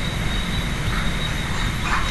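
A steady background noise floor: an even hiss with a low rumble and a thin, steady high whine, unchanging throughout.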